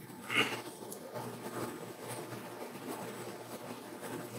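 Quiet room tone with a low steady hum, and a brief faint sound just after the start.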